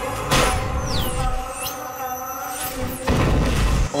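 Action-film soundtrack: dramatic music with swooping whoosh effects, a hit about a third of a second in, and a deep boom near the end.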